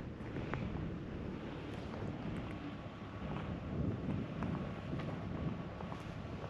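Wind blowing across the microphone, a steady rushing noise that rises and falls slightly.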